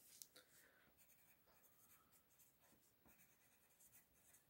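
Near silence, with faint scratching of a colored pencil on paper as lines are drawn.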